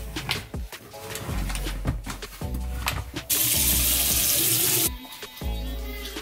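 Background music with a beat, and a tap running into a sink for about a second and a half near the middle, louder than the music.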